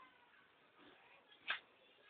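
Mostly quiet, with one sharp click about a second and a half in as the camcorder is handled.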